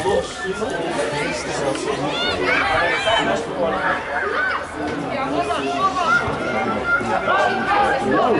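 Many overlapping voices, largely high children's voices, chattering and calling out at once, with no single speaker standing out.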